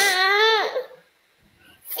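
A high-pitched, child-like whining cry from a voice: one drawn-out, wavering wail lasting under a second, falling away at its end, then the start of another short high voiced sound near the end.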